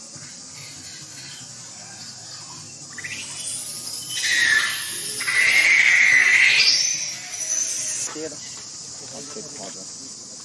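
Baby macaque screaming in distress as an adult female grabs it: high, wavering cries starting about three seconds in and lasting some five seconds. The loudest cry is held and sweeps sharply upward before the screams stop.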